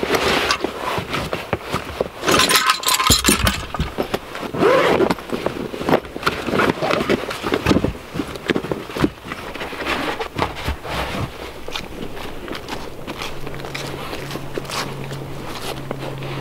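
Recovery straps, soft shackles and metal hooks being rummaged out of a nylon gear bag: irregular scraping, rustling and clinking. A low steady hum sets in near the end.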